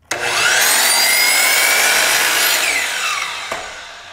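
DeWalt DWS780 sliding compound miter saw starting with a rising whine and cutting straight down through a baseboard held on edge, then winding down with a falling whine that fades out near the end. A single knock about three and a half seconds in.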